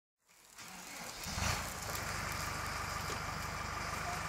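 A steady, low rumble of an idling engine, fading in within the first half second, with a brief louder knock about one and a half seconds in.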